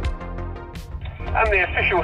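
Background music with a steady beat; a little over a second in, an announcer's voice comes over the in-car race radio, sounding thin through its small speaker.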